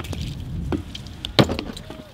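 A few sharp knocks or clacks, the loudest about one and a half seconds in, over a low steady rumble.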